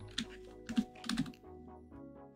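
Soft background music with a steady tune under three or four light typing taps in the first second and a half, as a search is typed in.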